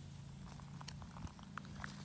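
Faint low steady hum with a few light clicks of a plastic container of rooting hormone powder and its peel-back label being handled.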